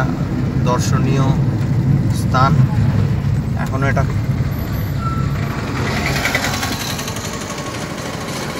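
Car running on the road, heard from inside the cabin: a steady low engine and tyre rumble, with a hiss rising for a couple of seconds in the second half.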